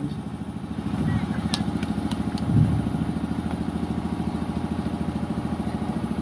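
A small engine running steadily, with an even, rapid throb.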